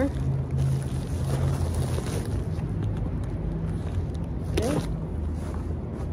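Steady low rumble of wind on the microphone, with plastic mailer packaging rustling as it is pulled open.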